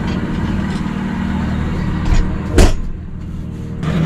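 Steady low mechanical hum, with a single sharp knock about two and a half seconds in.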